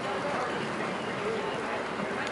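Steady outdoor background noise with no clear hoofbeats, and a faint distant murmur of voices about the middle.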